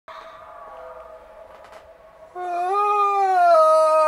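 A pet animal calling: a faint held note, then from about halfway through a loud, long drawn-out call that holds its pitch, stepping down slightly.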